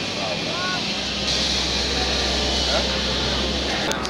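Low steady engine drone, starting about a second in and cutting off just before the end.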